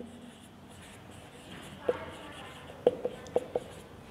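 Felt-tip marker writing on a whiteboard: soft scratchy strokes, then about five short squeaks in the second half as the tip is pressed to the board.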